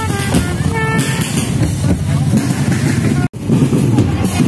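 Street procession noise: a trumpet plays a few stepped notes of a tune during the first second, over crowd voices and road traffic. The sound drops out for an instant about three seconds in.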